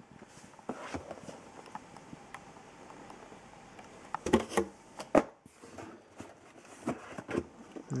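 Cardboard model-kit boxes being handled and slid against each other inside a cardboard shipping carton: soft scraping and rustling with a few sharp knocks, the loudest about four and five seconds in.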